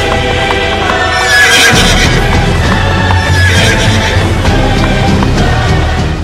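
Loud music mixed with horse sound effects: galloping hoofbeats and horse whinnies.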